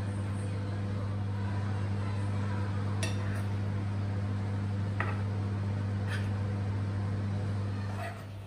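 A steady low hum throughout, with a few faint knocks of a wooden spoon against the frying pan as spaghetti is tossed in its sauce.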